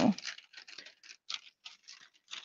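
A few faint, light clicks and taps at uneven intervals, the last word of speech trailing off at the very start.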